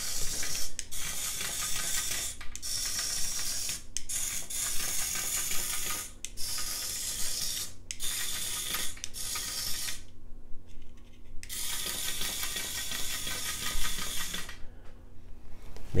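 Small battery-powered gear motor of a remote-controlled toy larva whirring and clicking as it crawls. It cuts out briefly several times, and for over a second about ten seconds in.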